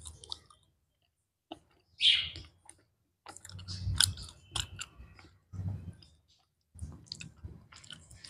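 Close-miked chewing of a white-chocolate KitKat wafer: groups of small wet clicks and mouth noises, with short silent pauses between the groups.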